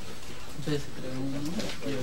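Indistinct speech in a room: a low man's voice talking quietly, too faint or muffled to make out words.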